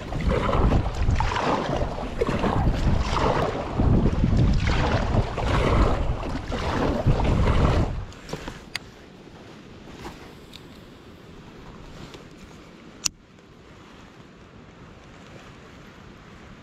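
Wind buffeting the microphone while a kayak paddle splashes through the water about once a second. About halfway through this gives way to quieter lapping water and light wind, with a few small clicks and one sharp click.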